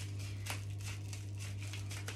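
Light crinkling and clicking of things being handled, over a steady low hum.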